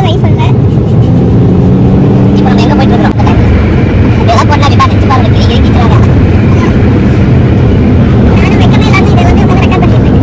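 Voices talking and laughing inside a moving car's cabin, over a steady rumble of road and engine noise.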